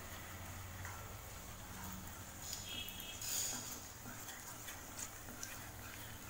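Cashews and raisins frying in ghee in a kadai: a faint sizzle with a spatula stirring and scraping against the pan, a little louder about three seconds in.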